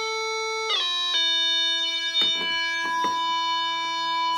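A steady electronic drone tone, a pure, unwavering pitched sound like an organ or bagpipe drone. It shifts pitch twice about a second in, then holds one note, with a couple of faint knocks near the middle.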